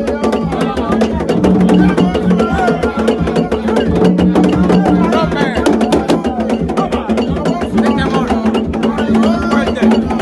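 Live hand-drum music: rapid, dense strokes on hide-headed drums with a knocking, wood-like click. Several voices sing and call over it.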